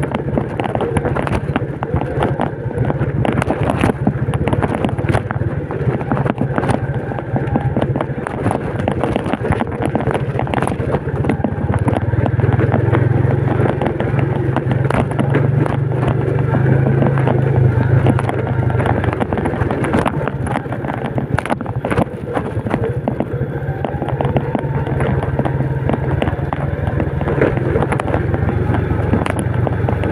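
Old Yamaha Vega underbone motorcycle's single-cylinder four-stroke engine running steadily as it rides over a rough dirt and stone track, with frequent clatters and knocks as the bike jolts over bumps. The engine gets louder for a few seconds in the middle.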